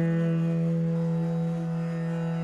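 Bansuri (bamboo flute) holding one long, low, steady note in a Hindustani raga.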